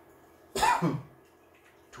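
A man coughs once, about half a second in, a short harsh burst lasting under half a second.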